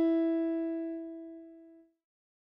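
Keyboard piano tone from the last notes of a played phrase, ringing out and fading steadily, then cutting off shortly before the end.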